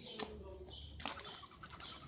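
Wings of fighting doves flapping in a quick flurry about a second in, over short high bird chirps that repeat at intervals.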